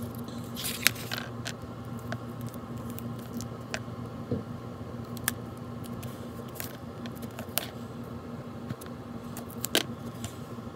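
Double-sided tape being applied by hand along the paper-wrapped edges of a chipboard journal cover. Scattered small taps, clicks and brief scratchy handling noises, the loudest just under a second in and again near the end.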